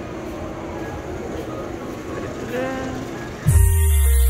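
Subway station ambience: a steady low rumble and hum of a busy underground concourse, with a brief voice in the middle. Near the end it cuts off suddenly and background music with deep bass notes starts.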